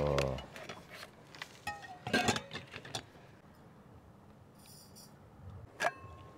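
Several light clinks of stainless-steel cups and a vacuum flask being handled, with short metallic ringing, about two seconds in and again just before the end. A brief faint hiss comes near five seconds.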